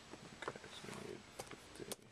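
Faint scattered clicks and taps from a computer keyboard and mouse as an order form is filled in, the sharpest click near the end. A short, low vocal sound comes about halfway through.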